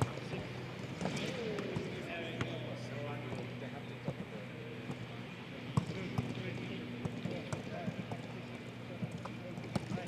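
Footballs being kicked and struck on a pitch, sharp thuds at irregular intervals with two close together around the middle. Distant shouting voices and a steady low hum run underneath.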